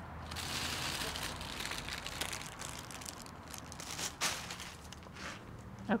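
Rustling and crackling of dry plant material being handled and pulled in a succulent bed, with several sharp snaps, the loudest about four seconds in.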